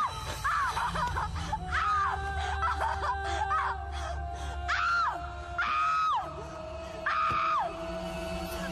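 Dramatic film background music: a low steady drone with a held middle tone, over repeated high wailing cries that rise and then fall, each about half a second to a second long, several times.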